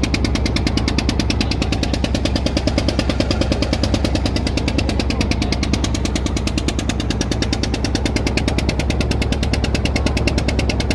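Engine of a wooden motorboat running steadily under way, a loud, even, rapid chugging beat.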